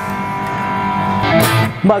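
Electric guitar played through an Axe-Fx III amp modeller set to a Carvin Legend 100 amp model: a strummed chord rings out, and a second chord is struck a little past the middle.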